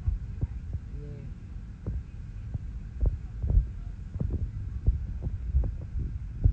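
Steady low rumble of an airliner cabin, with a dozen or so short, soft knocks at irregular intervals.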